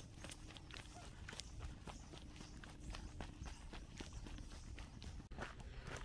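Faint footsteps of a hiker walking on a dirt trail strewn with dry leaves: a steady run of short footfalls.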